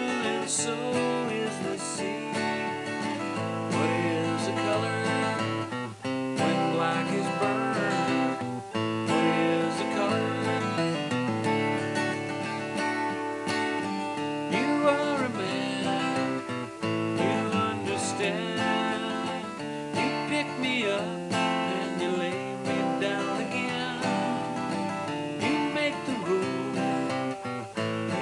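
Strummed acoustic guitar with a harmonica in G playing the melody over it, the notes bending and wavering.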